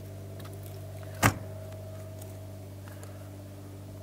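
A motorhome's exterior storage-compartment door shutting with one sharp bang a little over a second in, over a steady low hum.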